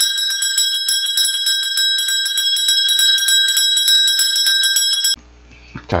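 A bell ringing in a rapid, continuous trill of strokes for about five seconds as a transition sound effect, then cutting off suddenly.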